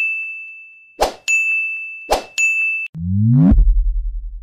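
Sound effects for a subscribe-and-like reminder animation: quick whooshes, each followed by a bright, ringing bell-like ding, three dings in all. Near the end a rising synth sweep leads into a deep, pulsing bass hit.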